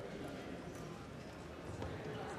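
Indistinct murmur of voices and movement in a legislative chamber during a roll-call vote, with a few faint knocks.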